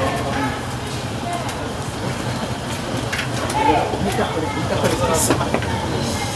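Voices of several people talking in the background over a steady low hum, with a few light clicks and knocks.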